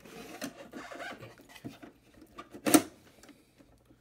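Hands handling and opening the carrying case of a Heathkit MI-2901 fish spotter: scraping and rubbing for the first couple of seconds, then one sharp clack, the loudest sound, about two-thirds of the way through.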